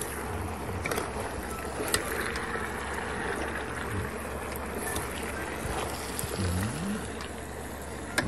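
Background music with a low voice singing over a steady noisy bed, and a couple of sharp clicks about one and two seconds in.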